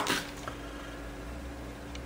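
Quiet room tone: a steady low hum with a faint even hiss, and no distinct pen strokes.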